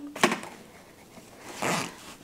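Quiet handling of a magnetic frame bar against a diamond painting on a wooden table: a single soft click, then a short rustle near the end.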